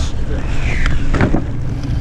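Wet nylon kite bags being dragged and lifted off a small boat onto a dock: rustling and a short knock about a second in, over a steady low rumble.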